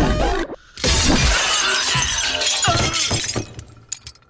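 Film sound effect of glass shattering and things crashing: one loud crash about a second in that trails off over the next two seconds. The background music stops just before it.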